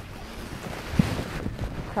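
Wind buffeting the microphone, a steady low rumble, with one brief low thump about halfway through.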